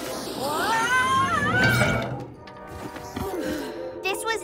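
A cartoon sound effect or whining cry: a wavering, gliding whine that rises and falls for about a second and a half, then gives way to quieter background music.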